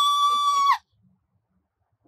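A woman's long, high-pitched shriek of delight, held on one steady pitch, cutting off sharply less than a second in.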